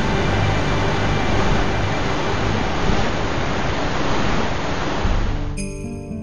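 Waterfall: a steady, dense rush of falling water with music underneath. About five and a half seconds in, the water sound cuts off abruptly, leaving only music with clear sustained notes.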